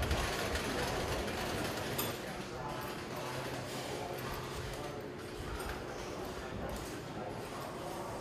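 Roller coaster over-the-shoulder restraints clicking and ratcheting as riders pull them down and lock them, over indistinct chatter of riders in the loading station.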